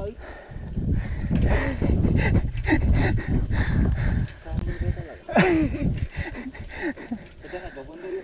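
Mountain bike descending a rough dirt trail: tyre rumble and wind buffeting the camera microphone, broken by many sharp rattles and clicks from the bike over bumps.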